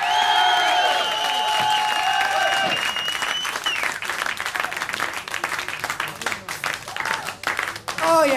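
Studio audience applauding and cheering at the end of a live rock song: sustained shouts and a whistle over the first three seconds or so, then steady clapping.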